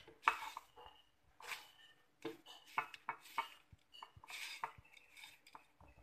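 A hand tossing crisp-fried pounded ginger in a metal mesh strainer: dry rustling and scratching of the strands against the mesh, in irregular bursts with a few light clicks.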